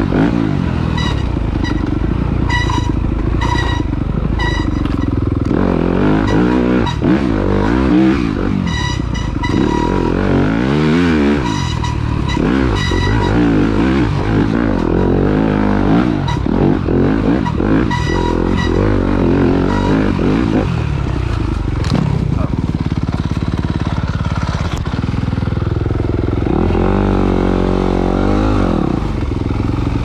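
Yamaha YZ250F dirt bike's 250 cc four-stroke single-cylinder engine revving and easing off again and again, its pitch rising and falling as the bike is ridden along a tight woodland trail.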